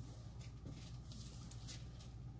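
Quiet room tone: a steady low hum with four or five faint, short rustles spread through it.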